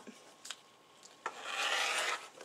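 Rotary cutter rolling along an acrylic ruler and slicing through quilt batting on a cutting mat: a light click about half a second in, then a rasping cut through the second half, the loudest sound here.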